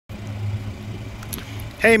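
A low, steady mechanical hum, like a vehicle running, with a man's voice starting just before the end.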